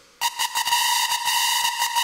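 Hardcore techno mix in a breakdown with no kick drum or bass. After a brief silence, a high, steady synth tone with rapid ticks over it starts about a fifth of a second in.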